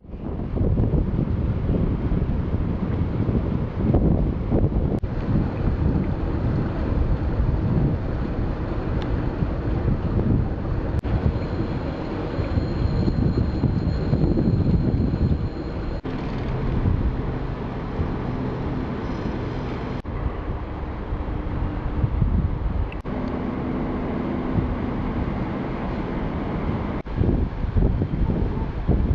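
Wind buffeting the camera microphone: a low, rumbling rush that rises and falls in gusts.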